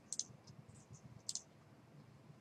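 Two faint computer mouse clicks, about a second apart.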